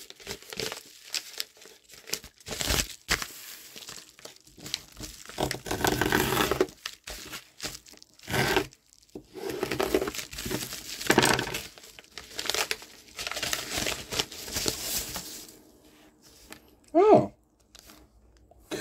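A mail package being torn open by hand: irregular crinkling, rustling and tearing of packaging, in bursts with short pauses.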